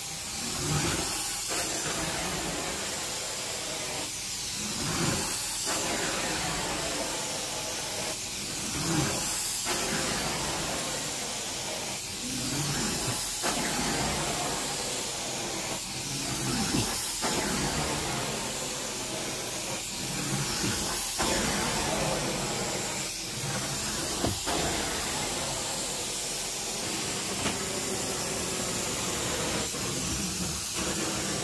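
Carpet extraction wand spraying and sucking water from berber carpet as a steady hiss. The hiss dips briefly every three to four seconds as each stroke ends and the wand is lifted for the next pass.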